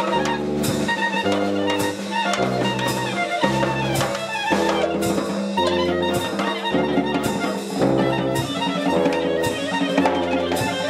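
Live jazz: a rubber clarinet improvising a solo over a tuba bass line that steps about two notes a second, with drums keeping time in regular strikes.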